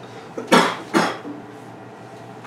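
Two short, sharp coughs about half a second apart, a person clearing the throat.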